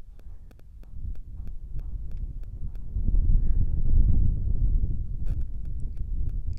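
Wind buffeting the microphone: a low rumble that builds and grows louder about three seconds in.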